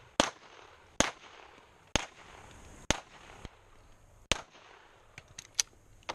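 Five gunshots fired at a steady pace, about one a second, each a sharp crack with a short echo, followed near the end by a few fainter, quicker clicks.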